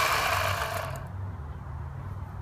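Corded electric chainsaw motor and chain running free, then winding down in pitch and fading out about a second in after the trigger is let go. A low steady hum continues underneath.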